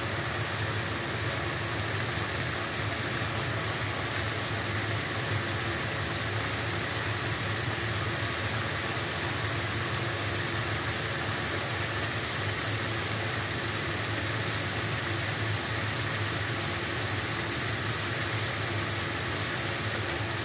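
Steady hiss with a low hum, unchanging throughout, as goat-meat curry cooks in an iron karahi over a lit gas burner.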